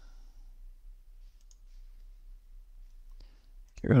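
Two faint computer mouse clicks, one about a second and a half in and one just after three seconds, with little else between them.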